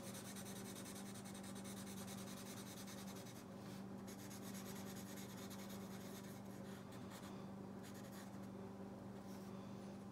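Black Sharpie marker scratching across textured watercolor paper as it colors in a shape with rapid repeated strokes, faint, over a steady low hum.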